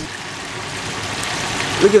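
Steady background noise with no distinct events, then a man's voice briefly near the end.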